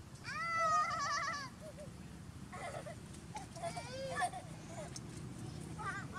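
A baby macaque crying: one loud, high, wavering cry near the start, then a few shorter cries in the middle.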